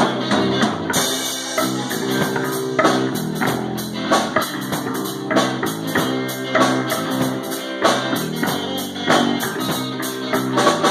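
Live rock band playing an instrumental passage: electric guitars over a drum kit keeping a steady beat.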